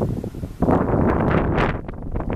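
Wind buffeting the microphone in uneven gusts, swelling sharply a little after half a second in.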